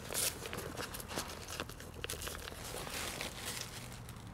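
Annex canvas being handled and rustled as the draught skirt's zip ends are lined up, with irregular short crinkles and crackles from the fabric.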